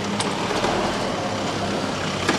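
Steady mechanical running noise with a low hum and a few faint clicks, from a van idling close by.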